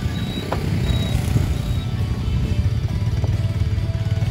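Background music over the steady low noise of running car and motorbike engines.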